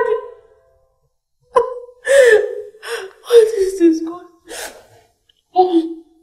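A woman sobbing: a run of short, high, wavering cries and gasps, starting about a second and a half in, with one more near the end.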